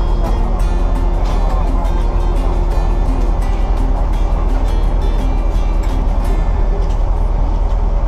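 Background music with a steady beat and sustained tones, playing without a break.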